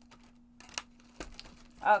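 Faint rustling of paper and cardstock being handled, with a few small sharp clicks.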